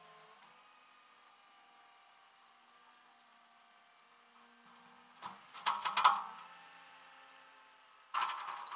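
Tow chain and hook clanking against the metal deck of a flatbed tow truck: a short cluster of ringing metallic clanks about five seconds in, loudest near six seconds. Before the clanks there is only a faint steady hum.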